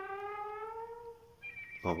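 Cartoon sound effect: a held, pitched note that glides slowly upward for about a second, followed by a thin, high, steady whistle-like tone.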